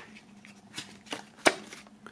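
Pages of a paper CD booklet being turned by hand: a few soft rustles and taps, the sharpest about one and a half seconds in.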